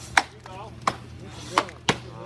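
Chopping axe striking a log underfoot in an underhand chop: four sharp hits, the last two close together.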